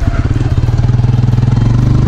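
Honda CBR125R's small single-cylinder four-stroke engine running steadily at around 3500 rpm as the bike pulls out of a bend. The engine turns about 500 rpm higher than before at this corner-exit speed because the front sprocket was cut from 15 to 14 teeth, which lowers the gearing.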